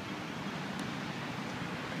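Steady outdoor ambient noise: an even low hum with hiss, like distant traffic and light wind on a phone microphone.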